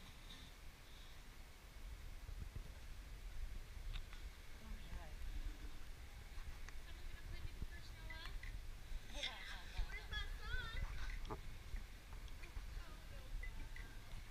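Faint voices of people talking at a distance over a low, steady rumble; the talk is clearest past the middle.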